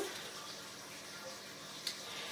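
Quiet, steady trickle of water running inside a Tower Garden vertical growing tower as its pump circulates the water. A short click near the end.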